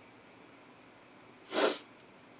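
A person's single short, sharp burst of breath about one and a half seconds in, against quiet room tone.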